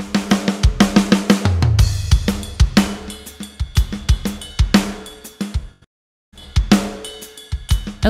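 Hertz Drums virtual drum plugin's sampled acoustic kit playing a rock groove: kick, snare, hi-hats and cymbals. The groove breaks off for about half a second near the three-quarter mark, then resumes. Velocity limits are at their defaults, so the full range of sample layers sounds, from ghost notes to the hardest hits, and the kick comes across as hit a little too hard.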